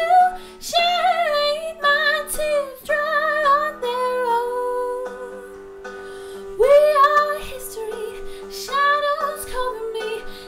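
A woman singing, her voice close on the microphone, over an instrumental backing track with steady held chords underneath.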